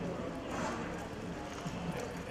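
Hoofbeats of a cutting horse on arena dirt as it darts and stops working a calf, with indistinct voices in the background.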